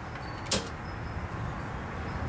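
A single sharp snap about half a second in: the main circuit breaker of an electrical panel being switched off, cutting power to the house.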